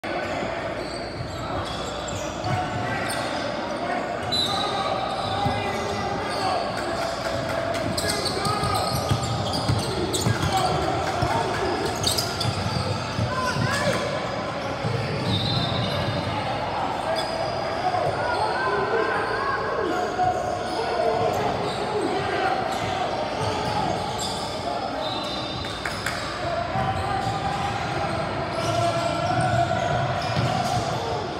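A basketball bouncing on a hardwood gym floor during play, with a steady background of players' and spectators' voices echoing in a large gym.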